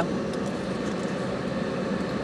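Steady hum and hiss inside a car's cabin, from the car sitting at idle with its ventilation fan running.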